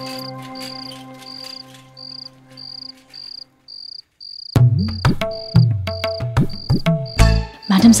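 Crickets chirping steadily, about two short high chirps a second, laid over background music. A held chord fades out in the first few seconds, and a louder, low, rhythmic music part comes in about halfway through.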